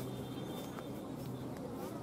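A steady low buzzing hum, with a thin high steady tone over most of it.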